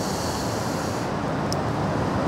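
Steady outdoor background noise of wind and distant city traffic, with a higher hiss during the first second and a faint click about one and a half seconds in.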